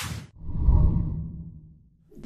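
Logo-intro sound effect: a quick whoosh, then a deep low hit that swells and dies away over about a second and a half.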